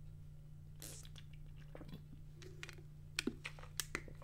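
Faint swallows and small plastic clicks of someone drinking from a plastic water bottle and handling its cap, a few scattered sounds over a steady low hum.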